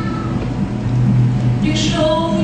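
Acoustic guitar accompaniment between sung lines of a woman's solo, her voice fading out at the start and coming back in near the end.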